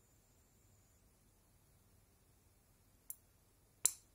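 Portable induction heater with a faint, steady high-pitched whine that steps up in pitch about a second in, then two sharp clicks near the end, the second louder.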